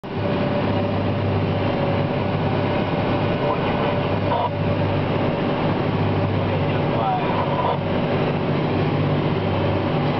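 A John Deere 4655 tractor's six-cylinder diesel and a JF FCT1355 pull-type forage harvester chopping grass silage, heard from inside the tractor cab: a steady, unbroken drone with a constant hum from the engine and cutterhead under load.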